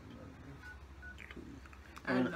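Phone keypad tones as a number is dialed: short, faint beeps a few tenths of a second apart.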